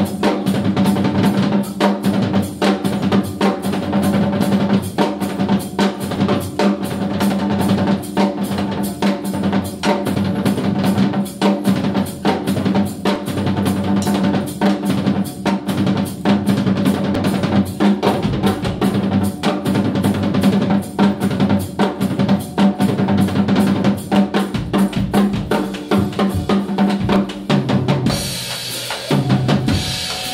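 A band playing funk rock, with the drum kit out in front: bass drum, snare and rimshots in a steady busy beat, over a low note held throughout. A short crash of high noise comes about two seconds before the end.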